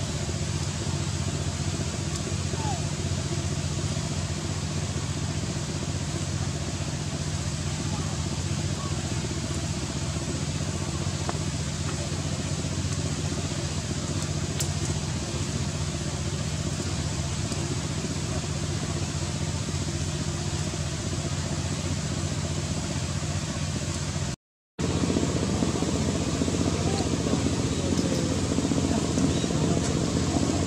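Steady low mechanical hum under a constant wash of outdoor background noise. The sound drops out for a split second about 24 seconds in and comes back slightly louder.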